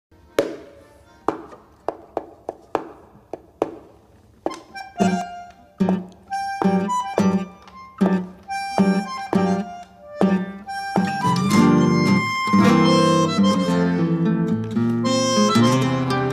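Tango played by a guitar and a bandoneón. It opens with a few sparse plucked guitar chords. The bandoneón then comes in with short detached reed notes over the guitar, and in the last few seconds it swells into full held chords.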